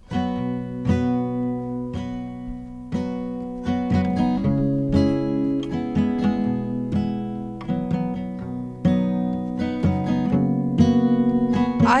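Steel-string acoustic guitar with a capo, playing strummed chords with a fresh stroke about every second and the chords changing as it goes: the first guitar track of a song demo being recorded.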